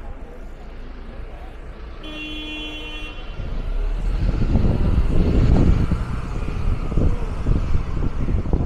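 Street traffic: a short steady beep-like tone lasts about a second, two seconds in, then the low rumble of a heavy road vehicle builds and stays loud for the rest of the time.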